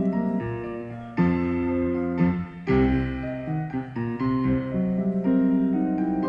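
Solo piano playing a fast stomp-style piece. Full chords with deep bass notes are struck about a second in and again near the middle.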